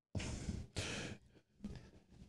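A man breathing out heavily twice close to a microphone, faint sigh-like exhales, with a smaller breath near the end.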